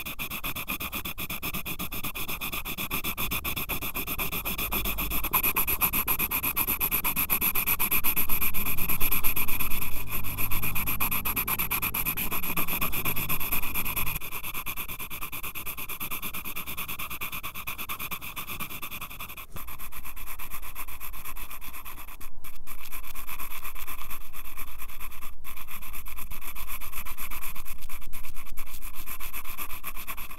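Graphite pencil shading on sketchbook paper, heard very close through a microphone clipped to the pencil: fast, continuous back-and-forth scratching strokes. In the second half there are a few brief breaks where the pencil lifts off the paper.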